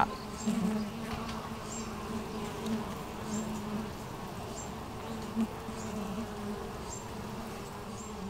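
Honeybee colony in an opened hive, a steady low hum of many bees with its main pitch around 200 Hz.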